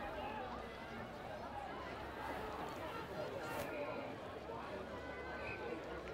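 Indistinct chatter of several spectators' voices at a steady, moderate level, with no single voice clear.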